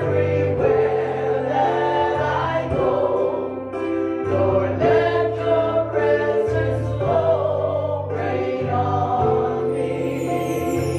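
Live gospel worship song: an electric keyboard plays held chords over a low bass line, with voices singing along.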